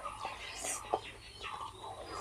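Soft, close-up wet chewing and mouth noises from a mouthful of rice biryani eaten by hand, irregular with small clicks.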